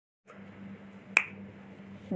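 A single sharp click a little over a second in, with a short ring after it, over a faint steady hum and room noise.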